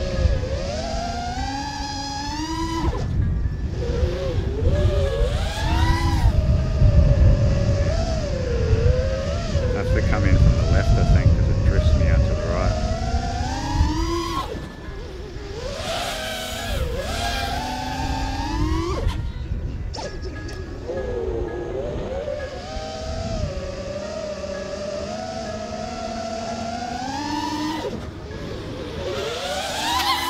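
Eachine Wizard X220 racing quadcopter's motors and 5-inch props whining, the pitch sliding up and down with the throttle. The onboard camera's microphone picks up heavy wind rumble, strongest in the first half.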